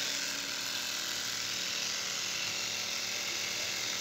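Small electric air compressors (a nebulizer compressor, a 12 V car tyre inflator and a vacuum-sealer pump) running together as they inflate party balloons, giving a steady, even whir.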